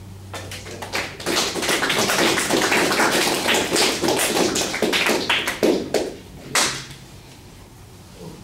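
A small audience clapping: a dense patter of hand claps that starts about a second in and dies away near the end, with one last sharp clap.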